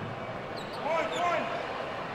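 Players and bench staff shouting play calls on a basketball court, with a few short yells about a second in warning that the stack set is coming, over court noise.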